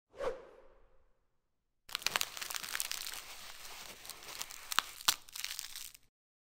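Dubbed-in ASMR sound effects for tweezers at work: a short sharp tap with a brief ring as the tweezers come in, then, after a short pause, about four seconds of crackly tearing and crunching with a few sharp clicks, standing for fibres being pulled out of a scalp wound.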